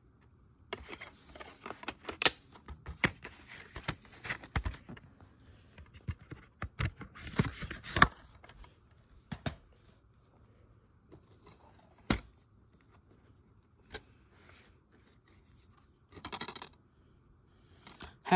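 Plastic DVD cases being handled: clicks, scrapes and rattles of the cases being opened, shut and moved, in bursts. The loudest is a sharp snap about 8 seconds in, with single clicks later on.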